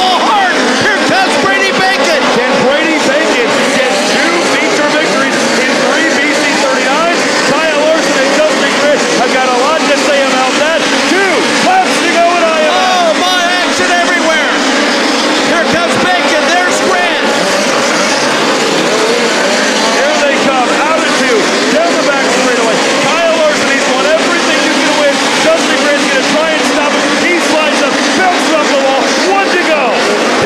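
Several USAC midget race cars racing on a dirt oval. Their engines overlap as a loud, continuous sound, each pitch repeatedly rising and falling as the cars throttle up and back off through the corners.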